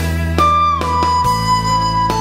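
Bitter bamboo dizi flute in the key of D playing a melody: a note slides down about half a second in and is then held, over a backing track of plucked-string accompaniment and bass.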